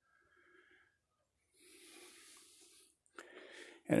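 Mostly quiet, with one soft breath close to the microphone about halfway through, lasting about a second, and a fainter breath just before speech resumes.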